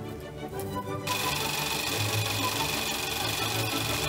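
Electric sewing machine starting up about a second in and running steadily as it stitches, over background music.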